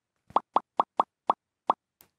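A cartoon 'pop' sound effect played about six times in quick, uneven succession, each a short bubbly blip rising in pitch, as text boxes pop onto the screen.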